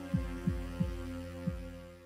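Closing bars of background music: a low drone held steady under four soft, deep thumps that fall in pitch, at uneven spacing, fading out.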